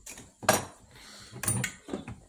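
Sharp metallic clinks and knocks of paint spray guns being handled at a wooden workbench. Two louder clacks come about half a second and a second and a half in, with quieter rattling between.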